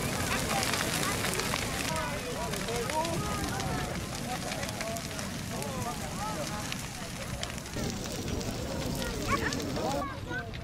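Large brushwood bonfire burning, crackling with many small pops, most densely in the first few seconds, over a steady low rumble. The voices of people talking nearby run through it.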